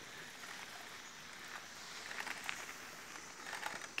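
Faint noise of mountain bikes climbing a dirt track: tyres rolling on loose dirt, with a few small clicks.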